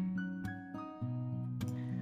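Background music on acoustic guitar: held chords, with new chords struck near the start, about a second in and again shortly before the end.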